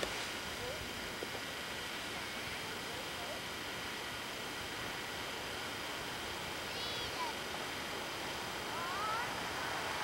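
Steady hiss of outdoor camcorder sound, with a few faint, short high calls from far off, two of them near the end.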